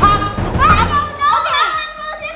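Excited voices of a woman and young girls calling out, with background music underneath for the first second and a half.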